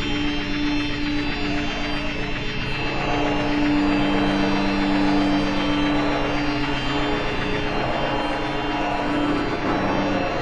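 Experimental electroacoustic music: piano accordion playing long held notes blended with sampled and processed electronic sound into a dense, steady drone. About three seconds in a lower held note swells up, and it fades again near seven seconds.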